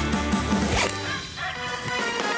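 Short music sting for a TV show's animated logo bumper, with a quick whoosh effect just under a second in.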